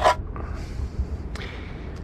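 Sound effects of a windowpane being cut and worked loose: a sharp knock, then two short scrapes.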